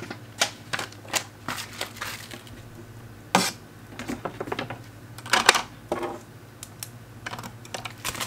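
Paper shipping label and mailer being handled at a desk: irregular light clicks, taps and paper noises, with two louder knocks about three and a half and five and a half seconds in.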